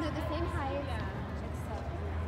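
Indistinct voices of players and spectators in an indoor sports hall, over a steady low hum.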